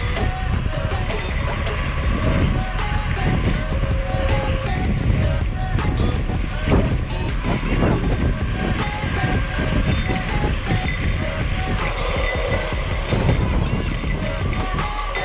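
Wind buffeting the camera microphone on a fast bicycle descent, a steady low rush, with music playing over it.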